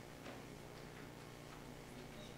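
Quiet hall tone with a steady low electrical hum and a few faint ticks.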